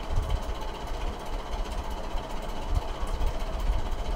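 Low, irregular background rumble with a faint steady hum under it and no distinct events.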